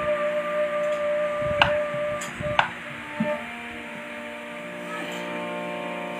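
Bamboo flute holding one long note over a harmonium drone, stopping about two and a half seconds in, with two sharp hits along the way; the harmonium then holds its chord alone.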